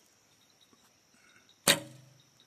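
A recurve bow is shot near the end: the released string gives one sharp snap, followed by a brief low twang of the string and limbs.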